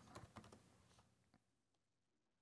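A few faint keystrokes on a computer keyboard in the first half second, then near silence.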